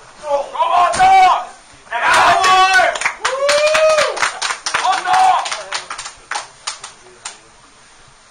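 Audience members shouting and clapping, with several loud drawn-out calls over the first five seconds; the claps then go on alone, slowing and thinning out near the end.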